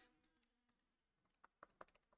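Near silence: room tone, with a few faint short clicks about a second and a half in.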